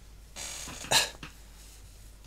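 A person breathing in softly, then a short, sharp cough about a second in.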